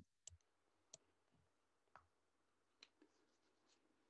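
Near silence: room tone broken by four faint, sharp clicks spread about a second apart.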